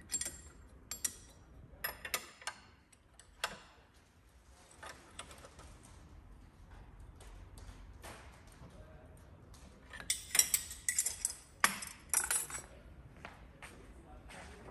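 Wrench clicking and clinking against a metal fitting in short irregular clusters, as the transmission flush machine's adapter is tightened into the gearbox's oil connection point.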